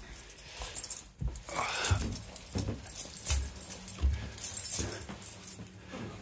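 Footsteps walking across a carpeted floor, with keys or tools jangling. There is a short whine about one and a half seconds in.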